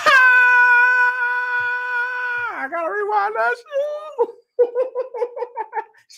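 A man's long, high-pitched held vocal exclamation of excitement, about two and a half seconds, dropping in pitch at the end. It is followed by wavering vocal sounds and a quick run of high giggling laughter near the end.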